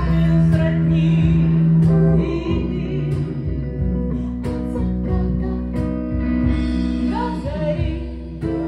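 Live band playing: a woman singing held, sliding notes over electric guitar, with sharp percussion strikes.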